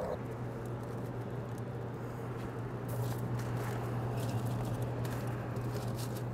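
A low, steady hum from a running pellet smoker, with a few faint crinkles of aluminium foil and light knocks as a foil tray is handled and set on the grate.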